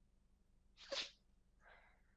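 Near silence, broken about a second in by one short, soft breath sound from a person at a headset microphone, with a fainter breath near the end.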